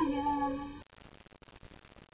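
A woman singing solo and unaccompanied holds a note that fades out a little under a second in. A pause with only faint room noise follows.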